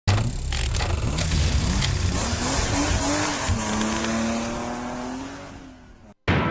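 Race-car sound effects in a title sting: engine and tyre noise with sharp hits at first, then a pitched engine-like whine that dips and levels off before fading away.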